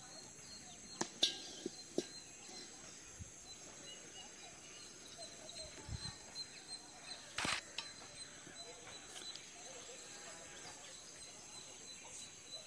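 Faint field ambience: a steady high-pitched insect drone, with a few soft clicks in the first two seconds and one sharper knock about seven and a half seconds in.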